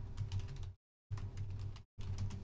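Typing on a computer keyboard: quick runs of key clicks in short bursts that cut off abruptly into silence.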